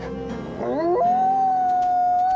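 Grey wolf howling: the call rises in pitch about half a second in, then holds one long steady note.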